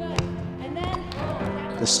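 A basketball bouncing on a hardwood gym floor in a few sharp knocks, under background music, with a man's voice starting near the end.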